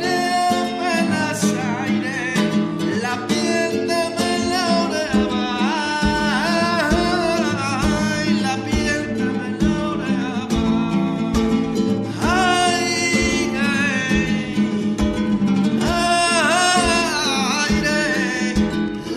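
Live vidalita: an acoustic guitar strummed steadily while a man sings long, wavering, sliding held notes over it. Soft low thumps join about five seconds in.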